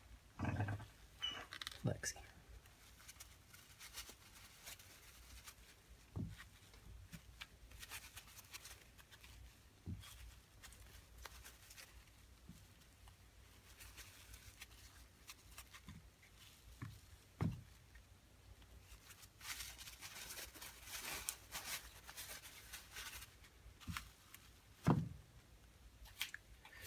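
Quiet room with faint, scattered small clicks and taps, and a few seconds of light scratchy rustling about twenty seconds in.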